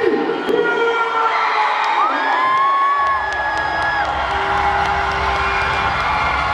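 A large crowd cheering and screaming, with many high-pitched shouts and whoops held over a dense roar. About halfway through, a low bass rumble comes in underneath.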